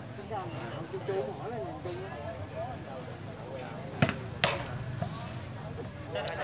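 Two sharp smacks of a volleyball about half a second apart, a serve being struck that fails to clear the net, over faint chatter of onlookers.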